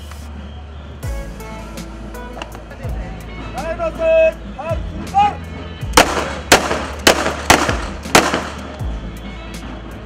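Police ceremonial gun salute: shouted drill commands, then about six seconds in a ragged run of about five rifle shots fired into the air over some two seconds, each with an echoing tail.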